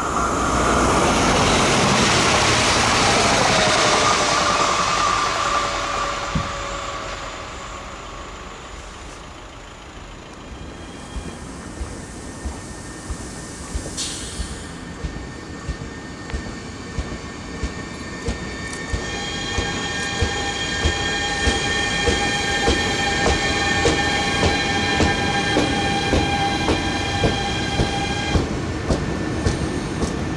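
A train passing close by and moving away, its sound falling in pitch and fading over several seconds. Then a new RER NG Z58500 double-deck electric multiple unit rolls slowly through the station, its wheels clicking regularly over rail joints, with a steady electric whine from its traction equipment that stops near the end.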